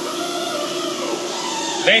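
Steady mechanical hum of workshop background noise, with no distinct events.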